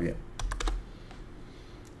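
A few computer keyboard keystrokes in quick succession about half a second in, then a couple of fainter single taps, as the chart is switched from the weekly to the daily timeframe.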